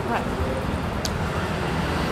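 Steady low rumble of road traffic, with a single sharp click about halfway through.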